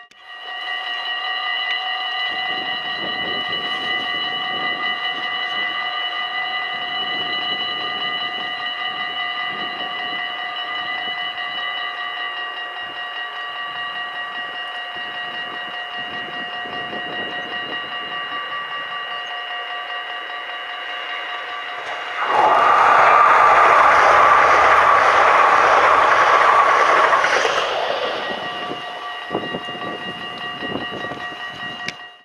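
NS Bombardier SLT electric multiple unit crossing a steel swing bridge: a loud rumble of wheels on the bridge starts suddenly near the end and lasts about five seconds before fading. A steady high whine of several tones runs throughout.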